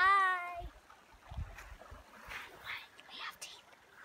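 A child's drawn-out, high-pitched "bye" whose pitch rises then falls, lasting well under a second. It is followed by faint bumps and soft breathy rustling as the phone camera is handled.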